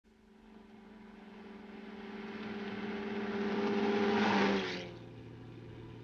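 An open-top car driving, its steady engine hum and road and wind noise growing louder for about four seconds, then falling away suddenly.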